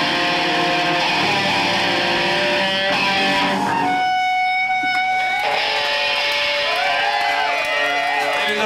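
Live rock band led by a distorted electric guitar. About four seconds in the band drops out, leaving one sustained guitar feedback tone as the guitar is held against its amplifier cabinet. The feedback then wavers up and down in pitch as the band comes back.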